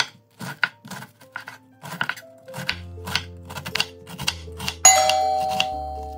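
Chef's knife chopping cabbage on a wooden cutting board: a steady run of sharp strikes, about three a second. Near the end a loud ringing bell chime sounds and fades, a subscribe-notification sound effect.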